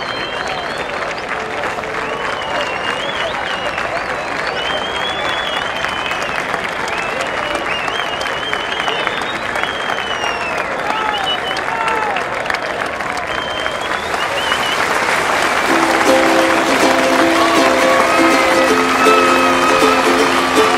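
Sustained audience applause with cheering voices. About three-quarters of the way through, a plucked-string tune comes in over it.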